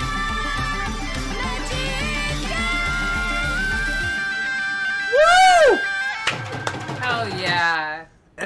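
Celtic Punjabi folk music: bagpipes over a dhol drum beat at about four strokes a second. About halfway through, the drum stops and a held note carries on, then a loud note swoops up and back down and a short, busier passage follows.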